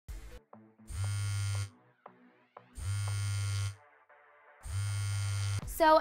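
A smartphone buzzing on vibrate against a hard surface, three buzzes of just under a second each, about a second apart.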